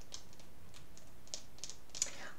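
Light, irregular clicks of tarot cards being handled and tapped.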